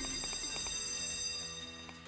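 An online slot game's chiming bonus-trigger jingle as three scatter symbols land and award free spins: bright bell-like tones held together, fading out after about a second and a half.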